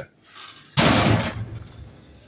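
Roll of quarter-inch metal wire screen hitting the concrete floor: one sudden clattering slam a little under a second in, dying away over about a second.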